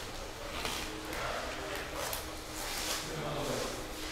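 Vinyl wrap being peeled off a car's body panel by hand, giving an irregular, quiet crinkling, with faint voices in the background.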